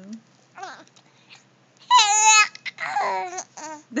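A three-month-old baby vocalizing: a short, loud, high-pitched squeal about two seconds in, then a lower, drawn-out coo. The mother takes these sounds for his attempt at "I love you."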